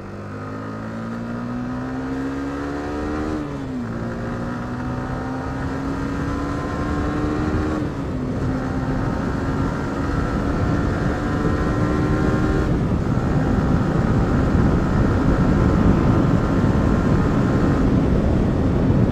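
Yamaha R15 motorcycle accelerating hard through the gears: the engine note rises, drops back with each upshift about every four seconds, then climbs again. Wind noise builds with speed until it covers the engine near the end, as heard through the rider's helmet-mounted mic.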